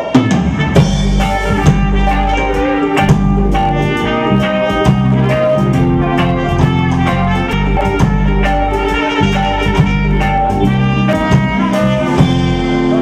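Live reggae band playing an instrumental passage: drum kit, bass and electric guitar with horns carrying the melody.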